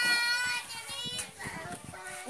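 A high-pitched voice, like a child's, holds a long sung or called note for about a second, in two drawn-out parts, then fades into quieter background noise.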